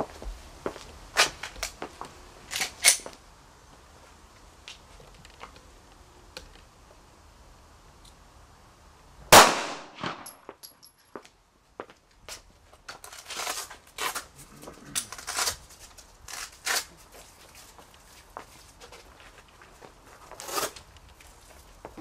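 A single 9 mm pistol shot, a Glock 19 firing a 124-grain full metal jacket round into a bullet-proof vest on a backing board, about nine seconds in and by far the loudest sound. Scattered light clicks and knocks come before and after it.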